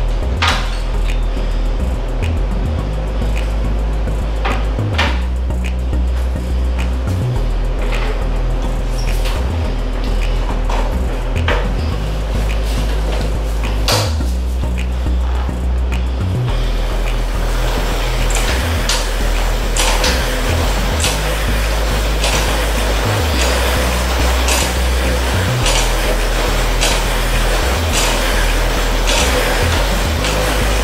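Music with a heavy bass line and a steady beat.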